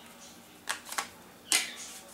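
Three sharp plastic clicks, the last the loudest, as the battery and back cover are fitted back onto a Huawei Ascend G510 phone.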